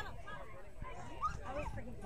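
A dog barking and yipping repeatedly in short calls, with a person's voice underneath.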